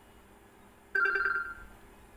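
A short notification tone from a Lava Z2 smartphone's speaker, starting suddenly about a second in and fading out within about half a second, as a notification sound is previewed.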